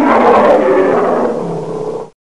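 A loud animal roar sound effect that starts abruptly, sinks slightly in pitch and fades over about two seconds, then cuts off sharply.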